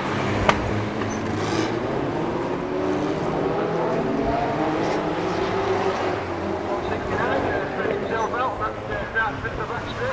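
A pack of stock car engines running together on a rolling lap, with a sharp knock about half a second in.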